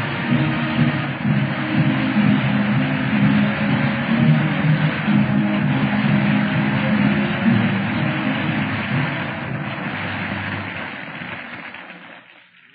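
Orchestral closing theme music of a 1948 radio drama, heard through a narrow-band old broadcast recording and fading out over the last few seconds.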